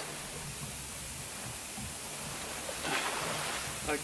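Steady low hiss with a faint low hum: background room tone with no distinct event, and a faint short sound about three seconds in.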